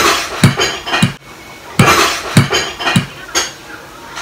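Metal fork clinking and knocking against a plate while stirring and twirling saucy noodles, about seven sharp, unevenly spaced clinks.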